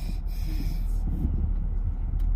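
Steady low rumble of a car's engine and road noise inside the cabin of a moving SUV.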